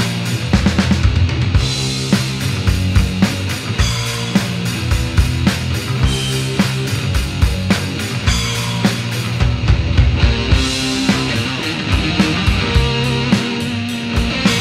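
Rock band music playing with a steady drum beat.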